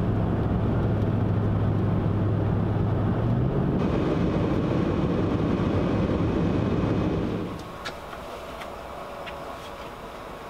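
Steady road noise and engine hum of a car driving on a highway, heard from inside the cabin. The low hum shifts about three and a half seconds in, and the noise drops much quieter at about seven and a half seconds, with a few faint clicks after.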